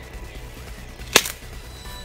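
A single sharp crack a little past a second in, made by the person himself, not by anyone else in the woods, over background music.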